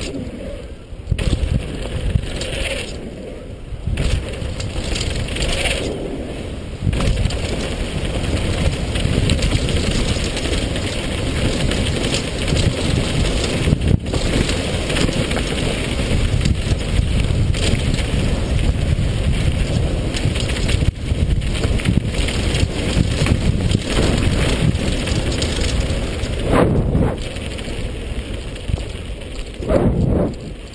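A downhill mountain bike ridden fast on a dusty dirt trail: tyres crunching over dirt and gravel and the bike rattling, under heavy wind buffeting on the camera microphone. The noise is loud and constant, briefly easing a few times.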